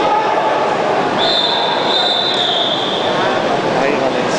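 A high, steady whistle blown for about two seconds, starting about a second in, over background voices in a large hall.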